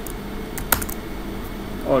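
Computer keyboard keystrokes: a quick cluster of clicks a little under a second in, as a Jupyter Notebook cell is run with Shift-Enter.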